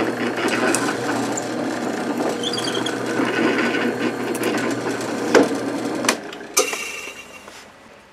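A drill press is running with its bit boring down into a wooden dowel, the wood grinding against the bit. About six seconds in the motor hum stops, there is a sharp click, and the sound fades as the spindle winds down.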